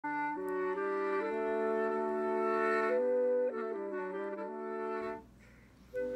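Short intro music of held wind-instrument chords, several notes sounding together and shifting step by step, stopping about five seconds in.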